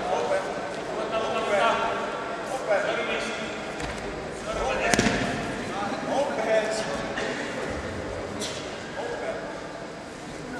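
Voices calling out in a sports hall during a wrestling bout, with one sharp impact about halfway through.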